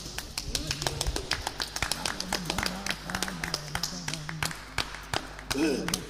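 Lo-fi 1980s band recording in a break between sung lines: dense, irregular tapping and clattering percussion over a low, wavering bass line.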